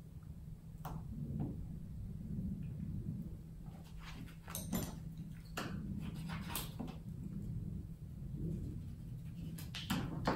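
Painted paper being handled and cut with scissors: scattered short snips and rustles, a cluster of them around the middle, over a low steady hum.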